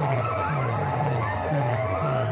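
Loud, distorted DJ competition music blaring from a trailer-mounted rig of horn loudspeakers. A falling bass note repeats about twice a second under wavering, gliding high tones.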